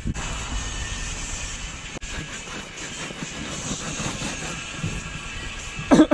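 A cloth rag scrubbing the dirty rubber tube of an inflatable boat with cleaning solution, a steady rough rubbing noise.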